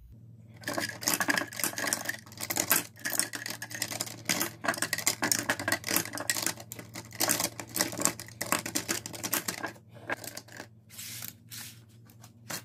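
Lip pencils and lipsticks clattering against each other and against a clear acrylic organiser as they are handled and moved by the handful: a dense run of clicks and rattles that thins out near the end.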